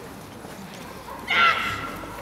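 German Shepherd giving one sharp, high-pitched bark about a second and a half in, while jumping at the protection helper.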